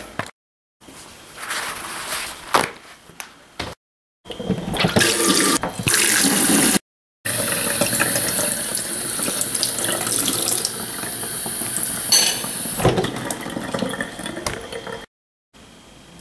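Kitchen tap running into a stainless steel sink, the stream splashing onto a paper towel held under it to wet it: a steady rushing hiss. The sound drops out abruptly several times at cuts.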